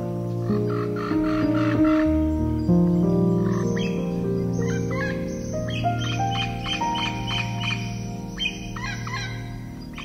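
Slow, relaxing piano music with long sustained notes, overlaid by birds chirping in quick repeated runs, about a second in and again through most of the second half.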